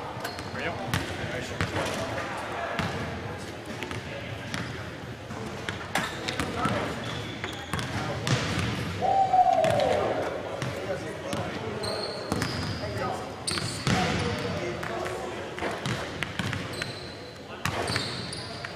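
Basketballs bouncing on a gym floor, each bounce echoing in the large hall, over background voices. A few short high squeaks come in the second half.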